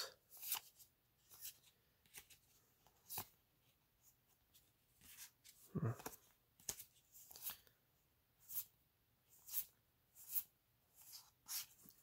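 Magic: The Gathering cards slid one at a time through the hands, a faint short swish about once a second as each card is moved from the stack.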